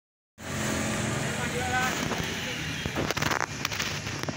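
Steady outdoor background of motor traffic, a continuous low rumble, with a brief voice heard about three seconds in.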